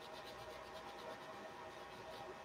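Faint scratching of a wax crayon colouring on textured watercolour paper in quick, short back-and-forth strokes.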